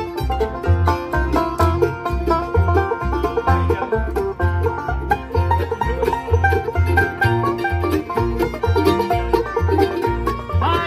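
Acoustic bluegrass band playing an instrumental passage: an upright bass plucks a steady beat under quick, dense picking from mandolins and guitar.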